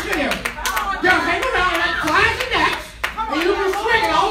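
Scattered hand claps mixed with excited, wordless shouting voices amplified through a microphone.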